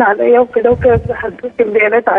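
A woman caller speaking over a telephone line, her voice thin and narrow.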